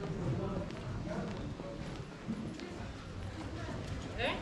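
Pedestrian street ambience: footsteps clicking on stone paving, mixed with the talk of passers-by.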